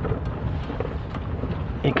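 Low, steady rumble inside the cabin of a SsangYong Rexton 2022 crawling over rough off-road ground through shallow ditches: its 2.2-litre diesel engine and tyres, with a few faint knocks.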